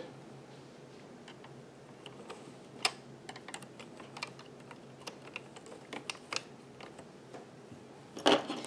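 Scattered light clicks and taps of a crochet hook and fingers on the plastic needles of an Addi Express knitting machine, the sharpest click about three seconds in and a run of smaller ones a few seconds later.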